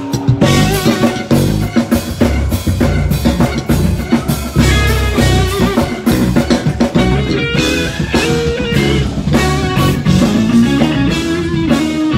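Live gospel band playing loudly, with drum kit, guitar and keyboards.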